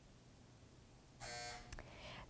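Quiet room tone, then a game-show buzzer sounds once for about half a second, a little over a second in. It signals that time has run out with no answer given.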